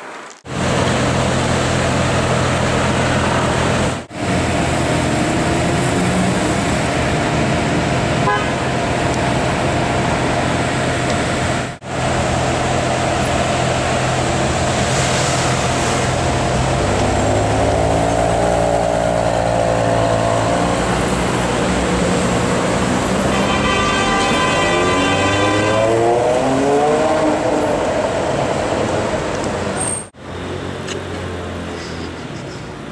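Bugatti Veyron's W16 engine running steadily at idle, its note shifting and rising in pitch in the second half. A car horn sounds for a few seconds near the end.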